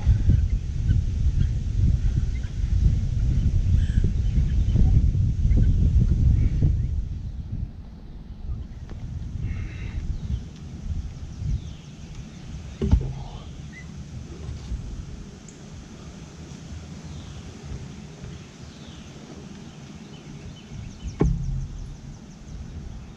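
A steel pipe being twisted and worked into a drilled hole in a wooden post. Low rumbling noise runs for about the first seven seconds, followed by quieter handling sounds and a single sharp knock about halfway through.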